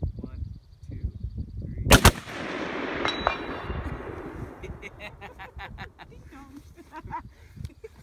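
Two .308 rifles fired almost at once about two seconds in, the two shots a fraction of a second apart, with a long echo rolling away after them. About a second later two faint metallic pings, one just after the other, from the steel gongs being hit downrange.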